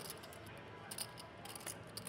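Faint, scattered clicks of clay poker chips being handled at the table.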